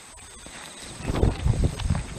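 Sneakers stepping and shuffling on asphalt, with a run of irregular low thuds in the second half as he steps sideways and turns.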